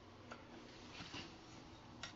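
Near silence with a couple of faint light clicks of a metal spoon stirring packed brown sugar and cinnamon in a glass measuring cup.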